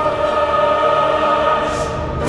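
A choir singing a long, steady held chord in a classical choral piece.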